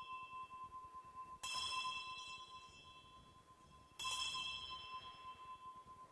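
An altar bell struck twice, about a second and a half in and again about four seconds in, each stroke ringing on and slowly fading, over the ring of an earlier stroke; it is rung at the elevation of the consecrated host.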